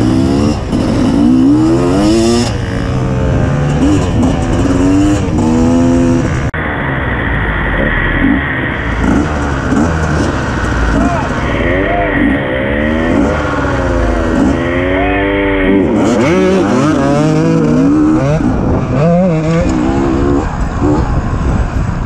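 Two-stroke dirt bike engine of a 2015 Beta 250RR revving hard and shifting through the gears, its pitch climbing and dropping again and again as it accelerates along a dirt trail.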